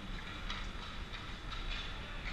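Ice hockey skate blades scraping and carving on rink ice in short repeated strokes, a couple a second, over a steady low hum from the arena.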